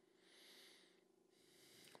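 Near silence: room tone, with two faint soft swells of hiss, about a quarter second in and again about a second and a half in.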